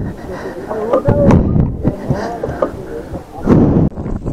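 People talking over a steady low rumble, with a loud thump shortly before the end.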